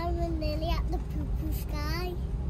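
A young girl's high voice in two drawn-out, sing-song phrases, over the steady low rumble of an airliner cabin.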